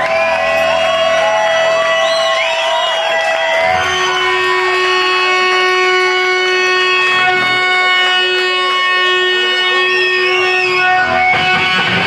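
Electric guitar feedback through a loud amplifier: whining tones that bend up and down for the first few seconds, then a held, ringing chord with steady overtones. About eleven seconds in, the full band comes in with distorted guitar.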